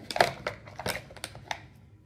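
A handful of small, sharp clicks and rustles from a hand placing a magnet-backed pom-pom onto a glossy binder page, mostly in the first second and a half.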